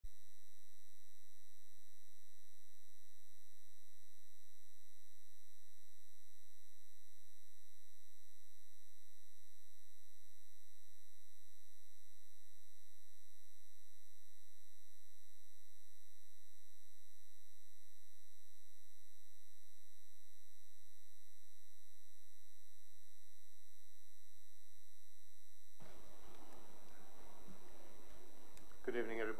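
Steady electronic tone near 2 kHz with evenly spaced higher overtones and a low hum beneath, unchanging in level; about 26 seconds in, open-microphone room sound joins it.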